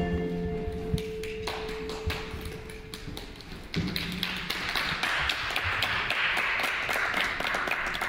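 The stage band's last held note fades out over the first three seconds while a few claps start, then a small audience's applause swells from about four seconds in.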